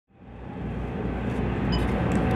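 Low, steady mechanical rumble aboard a boat, fading in from silence over the first second.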